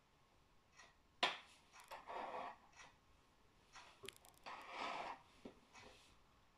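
Faint handling sounds of a plastic snap-together circuit kit on a wooden table: one sharp click about a second in, then soft rubbing and scraping with a few small clicks.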